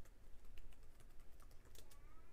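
Computer keyboard typing: a quick, irregular run of quiet keystrokes as a line of code is typed.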